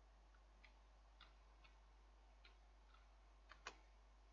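Near silence over a faint low hum, broken by about seven faint, sharp, irregularly spaced computer keyboard clicks, the two loudest close together shortly before the end.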